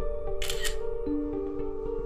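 Background film score of held, sustained notes. About half a second in, a brief camera-shutter click like a phone snapping a photo.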